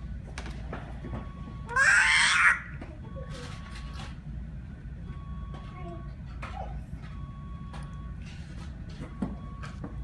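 A small child's loud, short, high squeal about two seconds in, over a steady low background hum. A faint electronic beep repeats about every two seconds throughout.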